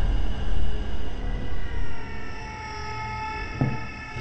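Dark horror-film underscore: a low pulsing rumble that fades after about two seconds, under sustained eerie drone tones at several pitches, with a short knock near the end.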